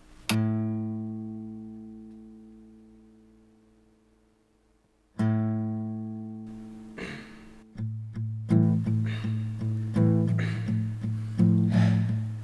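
Guitar music on the soundtrack. A single chord is struck and left to ring out and fade, a second chord follows about five seconds in, and near the end a steady rhythmic strumming pattern begins.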